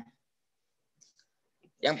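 A pause in a man's speech: near silence with a couple of faint clicks about a second in, then his voice starts again near the end.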